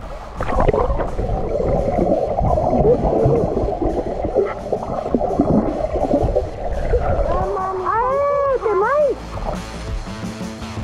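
Muffled churning and rushing of pool water picked up by a microphone underwater as swimmers move around it. Near the end a muffled, warbling voice comes through the water.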